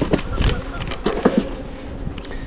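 Honeybees buzzing as a steady hum over an open hive box, with a few sharp knocks of hive gear in the first half second.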